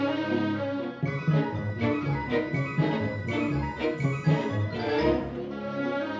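Symphony orchestra playing: a held chord for about a second, then a livelier passage of short, detached repeated notes.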